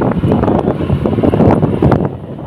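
Wind buffeting the camera microphone outdoors, a loud, steady low rumble.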